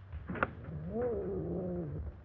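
A cat gives a drawn-out, low meow lasting about a second, shortly after a brief sharp sound about half a second in. Old film soundtrack hum runs underneath.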